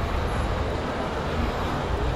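Steady background din of a busy shopping mall: an even noise with a deep low rumble and no distinct events.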